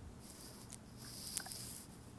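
Light soy sauce poured from a bottle into a plastic measuring tablespoon over a small ceramic bowl: a faint, soft trickle lasting most of two seconds, with a couple of light clicks.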